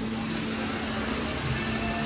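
Steady background noise inside a large store: an even hiss with a low, steady hum beneath it.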